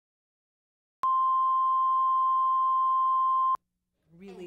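Steady electronic test tone at a single pure pitch. It starts abruptly about a second in and cuts off suddenly about two and a half seconds later, typical of a line-up reference tone laid at the head of a video tape.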